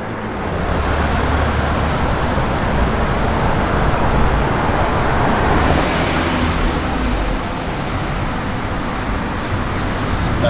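Street traffic with a car engine running steadily underneath, and a vehicle passing about six seconds in.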